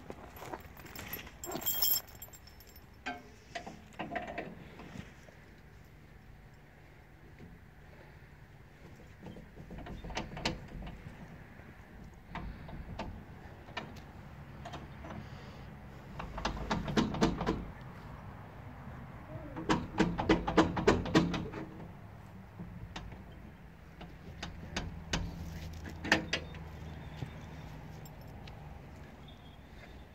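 Metal dog chain rattling and clinking in several short bouts, the longest in the second half.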